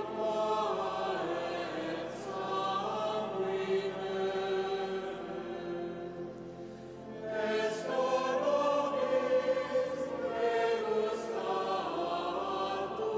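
Choir chanting during communion, with sustained sung notes moving from pitch to pitch. It eases into a brief lull a little past halfway, then swells again.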